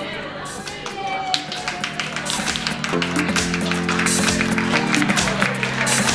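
A small group clapping, with quick, uneven claps from about a second in. Background music of held chords comes in about halfway.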